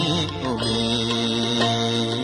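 Buddhist devotional song: a singing voice wavers briefly, then holds one long steady note over a steady low drone accompaniment.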